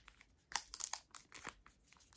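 Foil wrapper of an Upper Deck hockey card pack crinkling in the hands, a quick run of faint, sharp crackles starting about half a second in as the pack is gripped at its top edge to be opened.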